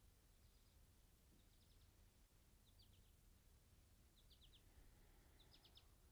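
Near silence with a faint bird calling: five short clusters of three or four quick high chirps, a little over a second apart.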